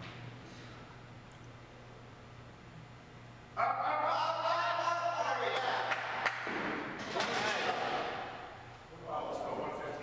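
Voices shouting encouragement during a heavy front squat: after a few seconds of low steady hum, loud calls break in suddenly and come in three long stretches.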